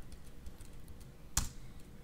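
Computer keyboard being typed on, the keystrokes mostly faint, with one sharper key click about one and a half seconds in.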